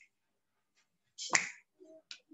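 A single sharp click about a second and a half in, just after a brief hiss; the rest is nearly quiet.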